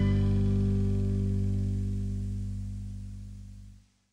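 The song's final chord, guitars and bass ringing out and slowly fading away, dying to silence just before the end.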